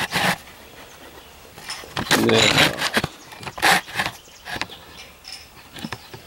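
Handling noise from a camera being moved and propped at a new angle: a few short scraping and rustling bursts with quiet gaps between them.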